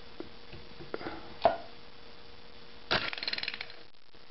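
A few knocks as a glass vial is pushed up into the rubber liner chuck of a semi-automated capper/decapper. About three seconds in, a fast run of clicks lasting under a second comes as the chuck briefly turns the vial's cap.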